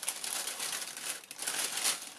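Tissue paper crinkling and rustling as it is handled, a continuous crackle that grows louder near the end.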